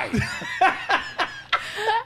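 Laughter in a run of short bursts.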